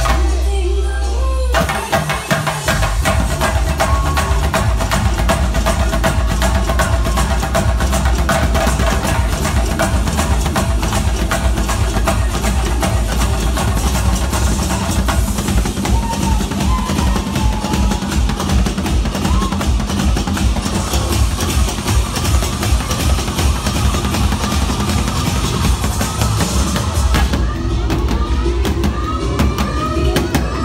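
Loud DJ dance track with a heavy bass beat, and chenda drums played live with sticks in fast, dense strokes over it, coming in about two seconds in.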